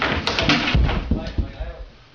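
A person falling off a stair banister and crashing down the staircase: a sudden start, then a quick run of thuds and knocks, heaviest in the first second and dying away near the end.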